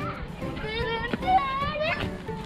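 A child's high voice calling out in drawn-out, wordless shouts that rise and fall, over background music.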